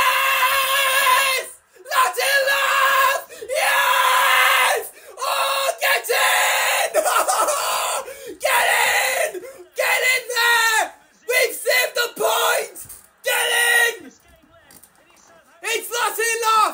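A young man screaming and yelling in celebration of a goal for his team, in about ten long, loud shouts with short breaks between them, dying down near the end.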